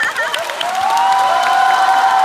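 Audience applauding and cheering, with long drawn-out cheers rising over the clapping about a second in.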